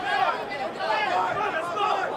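Several people's voices talking over one another, a steady chatter.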